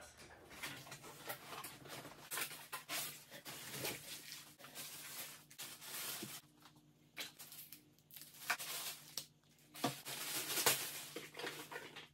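Unboxing handling noise: irregular crackling and rustling of plastic wrapping being pulled off a foot massager, with light taps and scrapes from the box and packing.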